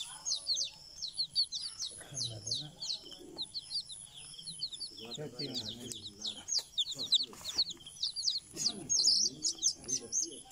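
Small birds chirping continuously in quick, high, short notes, several overlapping, with faint voices underneath now and then.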